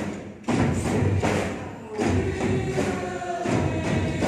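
Ensemble of many drum kits playing together over a backing track with singing. Drum hits and cymbals sound in unison, with a short dip just before half a second and hard entries about half a second and two seconds in.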